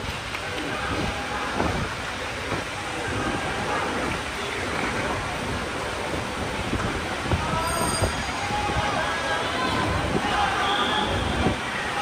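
Ambient noise of a large indoor sports hall: a steady wash of room noise with indistinct distant voices.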